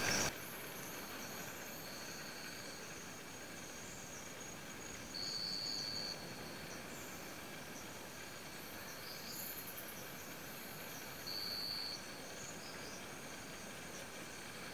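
Forest insects calling in a steady high-pitched chorus, with a louder shrill note held for about a second twice, around five and eleven seconds in.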